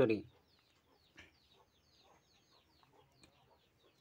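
Near quiet with faint bird calls in the background: a run of quick, short chirps lasting about two seconds.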